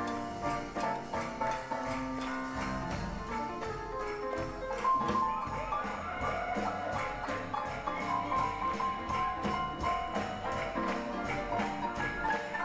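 Live small swing band playing, with piano out front over double bass and drums keeping a steady beat.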